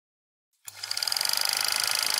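Film projector sound effect: a rapid, even mechanical clatter with a high whine, starting about two-thirds of a second in.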